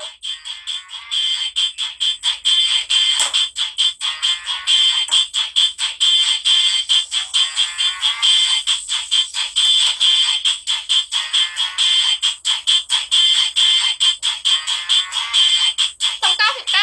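Electronic, ringtone-like music from the streaming app: a fast, irregular chatter of clicks over two steady high tones, with no low notes.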